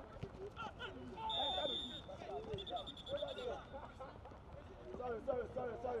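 Players and onlookers shouting across an open football pitch, with a referee's whistle giving two steady, high blasts from about a second in, stopping play.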